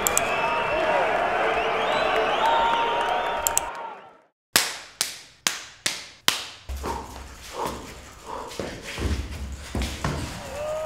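A lively babble of voices with rising and falling calls for about four seconds, cutting off to silence. Then a run of six sharp cracking hits about half a second apart, each with a short fading tail, followed by softer knocks over a low rumble.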